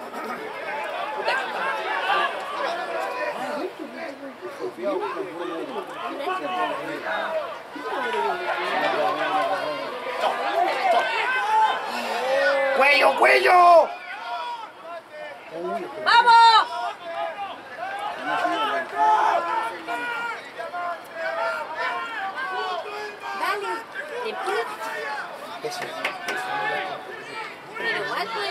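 Overlapping voices of rugby players and sideline spectators: shouts and chatter throughout, with two loud shouts about halfway through, a few seconds apart.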